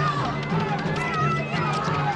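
Film soundtrack: a sustained, held music score under panicked cries and people running.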